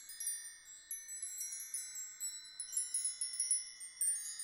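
Twinkling high-pitched chimes: many short ringing notes struck in quick, irregular, overlapping succession, with no low tones and no beat.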